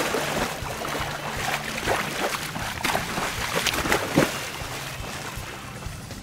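A shark thrashing at the water's surface beside a boat as it grabs bait on a rope, with repeated splashing and slapping of water that is busiest in the first few seconds and eases off near the end.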